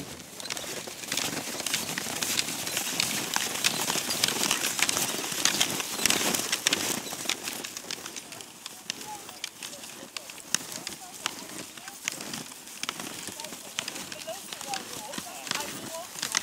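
Indistinct chatter of a group on snowshoes, over a dense crackle and crunch of steps and poles in snow.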